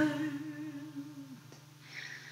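A woman's soft, hummed sung note, held with a slight waver and fading away about a second and a half in, over a low acoustic guitar note left ringing quietly.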